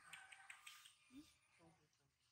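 Faint sounds: a few quick clicks in the first half-second, then two short, quiet voice sounds.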